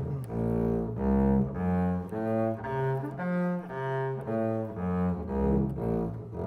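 Double bass played with the bow, an arpeggio of separate held notes moving step by step through the pattern, about two notes a second.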